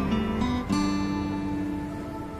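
Background music on acoustic guitar: a chord is strummed a little under a second in and left to ring as it fades.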